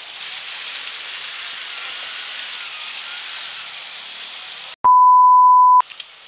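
Floodwater rushing across a road, a steady noise. About five seconds in, this gives way to a loud, steady, pure beep that lasts about a second, a tone laid over an edit.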